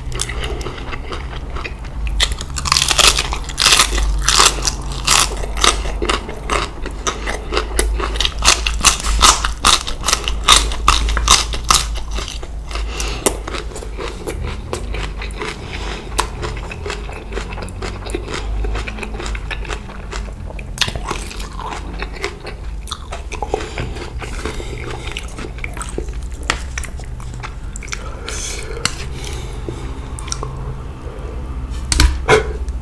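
Close-miked chewing of raw cabbage and spicy papaya salad with rice noodles. Loud, crisp crunches come thick and fast for the first dozen seconds, then settle into softer, wetter chewing.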